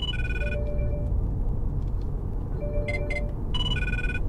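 Mobile phone ringtone: a short electronic tune that plays near the start and again in the second half, an incoming call ringing, over a steady low hum of road and engine noise in the car cabin.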